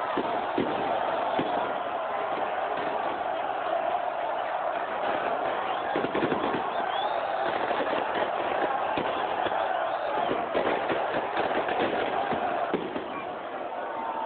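Large crowd of football supporters singing and chanting together, loud and continuous, with a few sharp bangs scattered through it.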